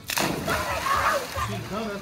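A sudden splash of water just after the start, followed by water sloshing, with faint voices underneath.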